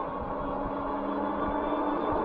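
The EUY K6 Pro e-bike's 1000-watt electric motor humming steadily under throttle while it pulls up a hill and gains speed, over rumbling tyre and wind noise.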